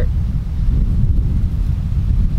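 A gust of wind buffeting the microphone: a loud, steady, low rumble.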